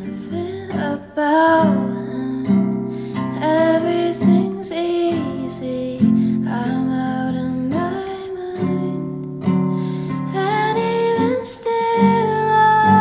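A woman singing a slow song, accompanied by a classical acoustic guitar.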